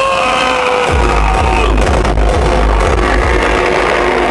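Hardcore techno played loud over a club PA: a held synth line that falls slightly in pitch. The heavy bass kick drum comes back in about a second in and pounds on.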